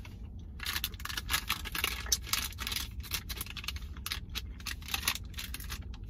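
A mouth chewing a peanut-butter protein bar with cookie pieces close to the microphone: irregular soft clicks and crunches, over a low steady hum.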